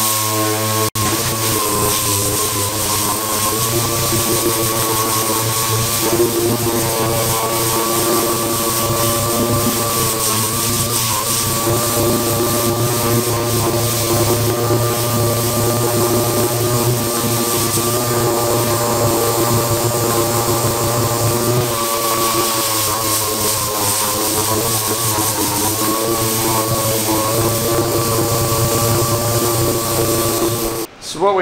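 Pneumatic random-orbital (DA) sander running steadily against a painted trunk lid: a continuous air-motor whine over a hiss of exhaust air, its pitch wavering slightly as it is pressed into the panel. It is sanding off the glossy paint coat down to the primer.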